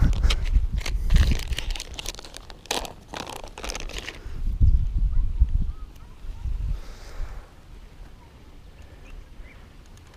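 Plastic bag of soft-plastic stick-bait worms crinkling and crackling as it is handled, busiest in the first few seconds, with low rumbles on the microphone; it quietens over the last few seconds.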